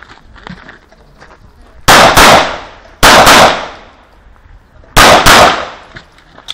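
Semi-automatic pistol fired six times in three quick pairs, each pair a fraction of a second apart and the pairs about a second apart. The shots are very loud and each rings out briefly.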